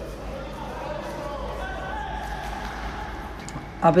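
Steady, echoing background noise of an indoor futsal court during play, with faint distant voices.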